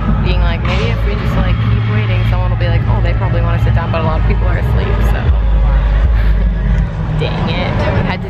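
A woman talking close to the microphone over a loud, steady low bass rumble from distant festival music.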